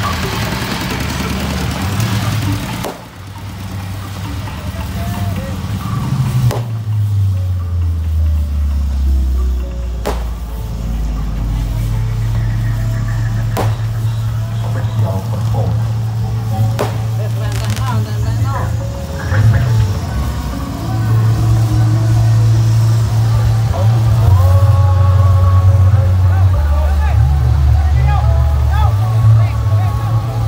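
Loud, bass-heavy music played over a parade float's sound system, its deep bass line holding each note for a few seconds before shifting, with voices over it. The sound drops out briefly about three seconds in, then comes back.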